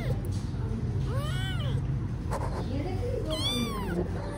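Young kittens meowing: two high meows, each rising then falling in pitch, about a second in and near the end, with fainter small mews between.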